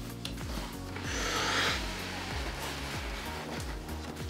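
Background music with a steady bass line. About a second in comes a brief rustle as the cardboard shoebox is opened and its tissue paper is handled.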